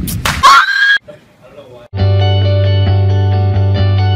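A short scream with a rising pitch in the first second, then a brief lull, then a held musical chord with a deep bass note from about halfway through.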